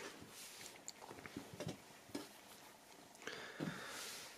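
Faint rustling and a few soft taps of a cotton T-shirt being folded up by hand, with a longer rustle near the end.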